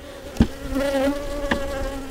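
A honey bee buzzing close by: a steady hum that wavers slightly in pitch. Two short knocks sound, one about half a second in and one about a second and a half in.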